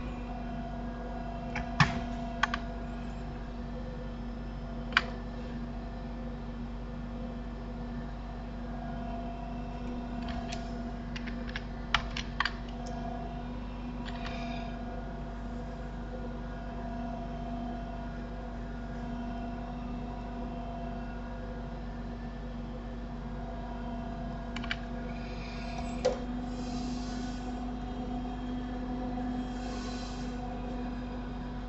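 Sharp clicks of a computer keyboard and mouse, scattered singly and in quick clusters, over a steady low hum.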